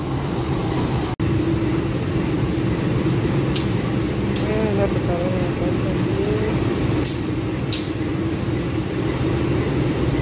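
Steady low rumble of a diesel-hauled train at a station platform, with two pairs of short, sharp high-pitched hisses in the middle.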